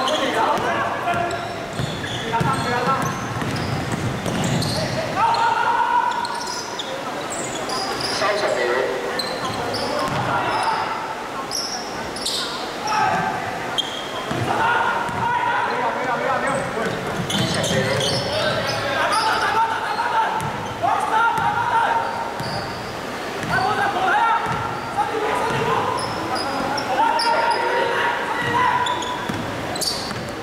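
A basketball being dribbled and bounced on a sports-hall court during a game, with players' voices calling out over it, in a large echoing hall.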